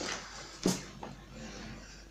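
Lead buckshot pellets and thread being handled on a workbench: a sharp click about two-thirds of a second in and a softer one soon after, over faint rustling.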